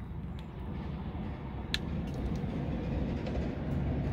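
Ford Coyote 5.0 V8 in a Factory Five Cobra idling with a steady low rumble through its side exhaust. There is a single sharp click a little under two seconds in.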